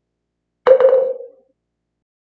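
A short ringing sound effect marking the change of chapter. A cluster of quick strikes comes about two-thirds of a second in, then one clear pitch rings on and dies away in under a second.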